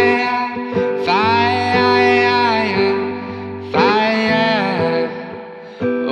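A man singing to his own acoustic guitar, holding long notes in two sung phrases over steadily ringing strummed chords.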